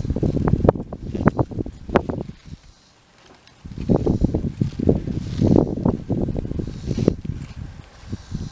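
Dry corn husks and leaves rustling and crackling, in an irregular run that pauses for about a second near the middle.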